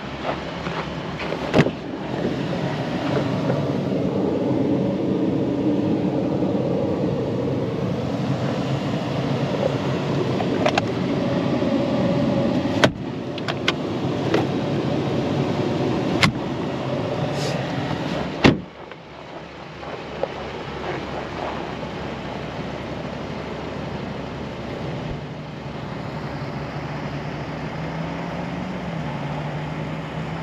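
Sharp latch clicks from a Ram 1500 pickup's cab fittings, including the glove box, over a steady rushing noise. About two-thirds of the way through, a loud clack is followed by a drop to a quieter steady low hum.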